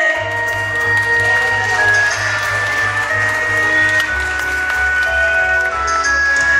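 Karaoke backing track playing an instrumental interlude: a held sung note ends right at the start, then a steady bass line comes in under a long, sustained high melody line.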